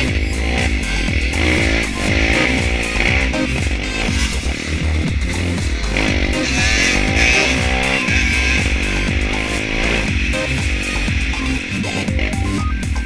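A dirt bike's engine revving up and down as it is ridden hard, the pitch climbing and dropping with each gear, under electronic background music with a steady beat.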